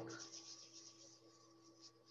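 Near silence with faint rubbing and light ticks of paper being handled, as glued paper pages are worked to make the glue stick.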